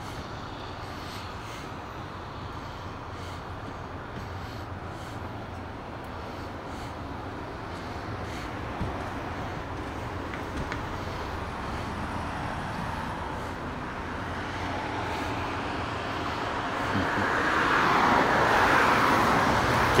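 Steady street traffic noise that slowly builds, swelling near the end as a vehicle passes close.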